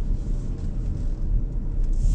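Proton Iriz's 1.6-litre four-cylinder petrol engine with CVT, and its tyres, heard inside the cabin at low speed: a steady low rumble.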